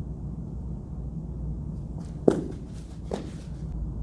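Athlete's footfalls on artificial turf as she pushes off and hops over a mini hurdle: two sharp taps a little past halfway, the first the louder, over a steady low room hum.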